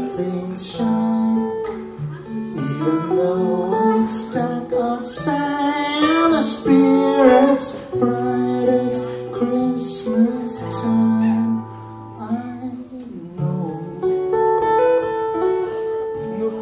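A man singing to his own strummed acoustic guitar, played live. In the middle the voice slides through long, bending notes, and near the end the guitar rings on more quietly.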